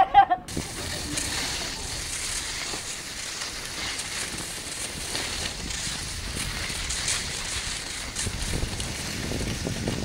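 Steady rushing, crackling noise of wind buffeting the camera microphone, swelling a little near the end.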